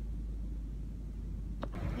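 Steady low rumble of a car heard from inside its cabin, with a single sharp click near the end.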